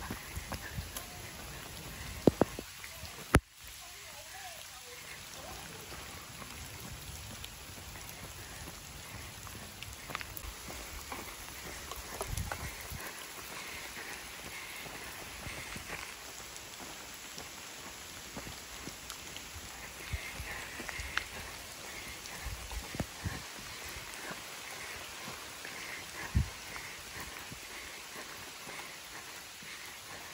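Steady rain falling on a paved road and roadside foliage, with a few sharp knocks.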